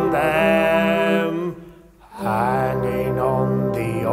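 Slow sung line, 'I've seen them', over sustained brass band chords, in two held phrases with a short break about a second and a half in.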